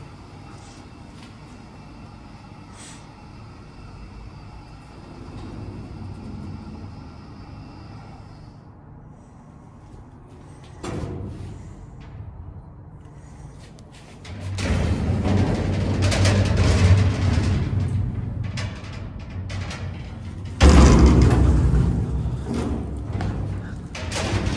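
Vintage 1977 Continental hydraulic freight elevator in operation. A steady machine hum with several fixed tones cuts off suddenly about eight seconds in. From about fourteen seconds there is loud, low metallic rumbling, with a heavy bang about twenty-one seconds in that rumbles away.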